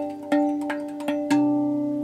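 Rav Vast steel tongue drum played by hand: about five notes struck in a slow melody, each ringing on long and overlapping the next, with a deeper note joining about a second and a quarter in.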